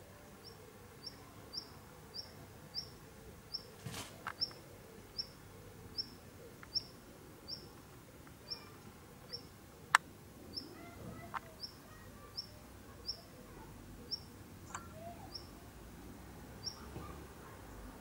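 Female black redstart repeating a short, high call note about twice a second. A few sharp clicks come in between, the loudest about ten seconds in.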